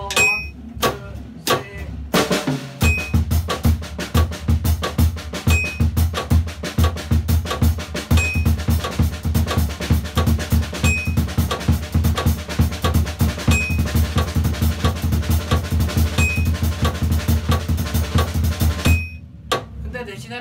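Drum kit played at 90 BPM with a metronome: fast paradiddle sticking on snare and kit, moving between sixteenth-note, sextuplet and thirty-second-note groupings over a steady kick drum. The playing starts about two seconds in and stops just before the end. A short high metronome beep sounds once a bar.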